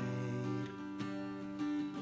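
Acoustic guitar strummed in a few slow strokes, each chord left to ring.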